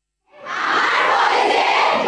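A large group of young women's voices in unison, starting suddenly about a third of a second in after silence.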